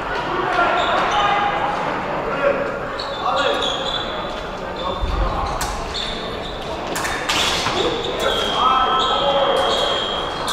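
Épée fencers' footwork on the piste: thuds of stamps and advances with a few sharp clicks, over the voices of a crowded, echoing hall.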